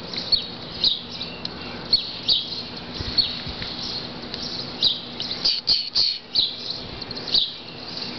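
Small birds chirping over and over, short high chirps all through, with a few soft knocks of handling noise about midway.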